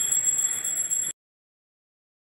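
Bells ringing rapidly and steadily for the evening aarti, a Hindu prayer ritual, as high, ringing tones. The sound cuts off suddenly about a second in.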